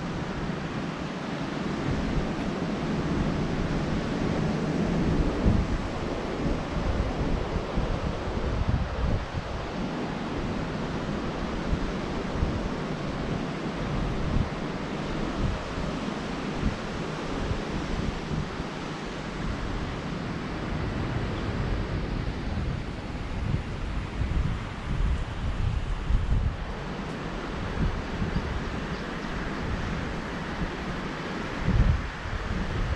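Wind buffeting a GoPro's microphone in an irregular low rumble, over a steady wash of surf from the nearby beach.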